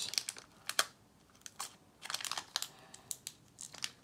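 Foil Pokémon booster pack wrapper crinkling in the hands as it is opened: scattered short, sharp crackles, with a quiet gap about a second in before the crackling starts again.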